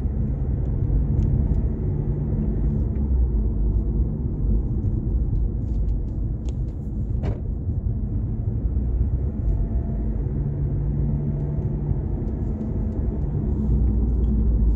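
Car driving slowly on concrete residential streets: a steady low rumble of engine and tyre noise, with a single faint click about halfway through.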